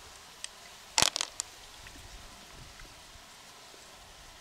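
Hands handling an opened freshwater mussel and its shell: a faint click, then a quick cluster of about four sharp clicks and cracks about a second in.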